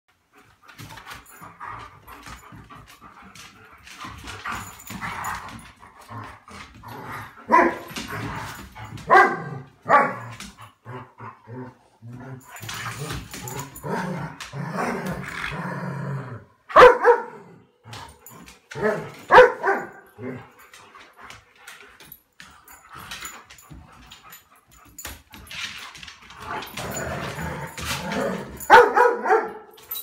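Dogs play-fighting: loud barks in short bursts, in three main clusters, with lower growling between them.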